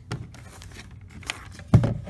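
Handling noise: a few scattered clicks and rustles, with one heavier thump near the end.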